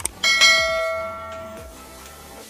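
A click, then a single bell ding that rings out and fades over about a second: the notification-bell sound effect of a subscribe-button animation.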